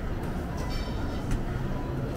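Buffet restaurant room noise: a steady low rumble, with a light ringing clink of tableware a little under a second in and a sharp click just past a second.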